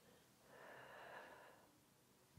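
Near silence, with one faint breath out lasting about a second, starting about half a second in, as a woman exhales during a slow arm circle.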